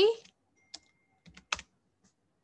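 Computer keyboard keystrokes as a word is typed: a few separate key clicks, the last one the loudest.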